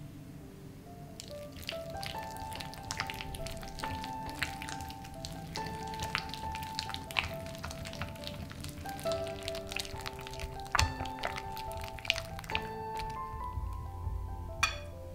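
A whisk beating soft cream cheese batter in a glass bowl: rapid, irregular clicks and scrapes of the wires against the glass that start about a second in. Background music with held melodic notes plays throughout.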